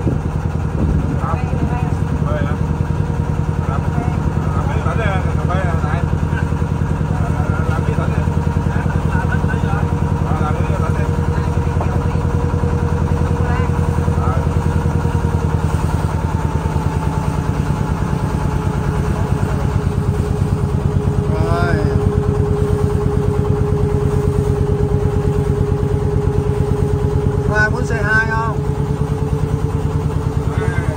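Boat engine running steadily, its pitch dipping slightly about halfway and rising again near the end.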